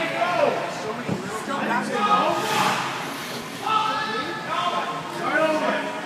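Indistinct voices calling out in the hall of an indoor ice rink, with no clear words.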